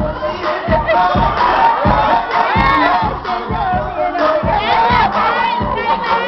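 Dance music with a steady bass beat, and an audience cheering and shouting over it.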